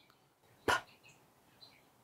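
A woman says a single, strongly aspirated "p", a short explosive puff of breath that demonstrates the English P sound, once, a little under a second in.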